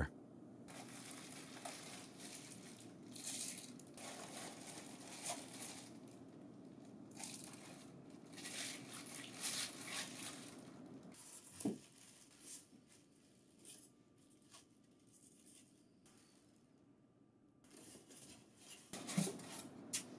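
Faint crinkling of plastic bags as bagged parts are handled and lifted from a box of foam packing, in irregular rustles that stop for several seconds before more handling near the end.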